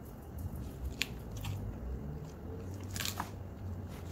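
A person chewing a forkful of turkey burger close to the microphone, with a few sharp clicks about a second in and again near three seconds.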